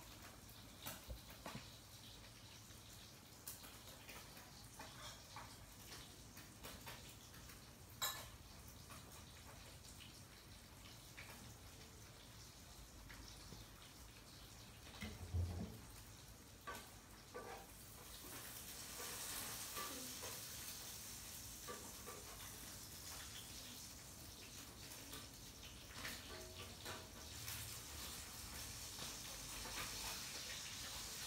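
Faint close-up handling sounds of Burmese grape fruit being peeled and picked apart by fingers: scattered small clicks and rustles, with one louder thump about halfway through, over a steady hiss that grows louder in the second half.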